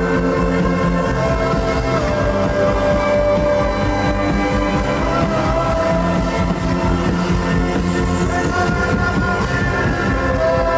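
Live synth-pop music played loud from a club stage: long held synthesizer lines and a melody over a steady beat.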